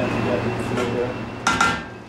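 Kitchenware clattering in a stainless-steel galley: one short, ringing clink about one and a half seconds in, under faint background talk.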